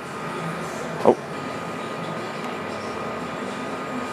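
Steady mechanical background hum with a faint constant tone, broken once about a second in by a short pitched sound.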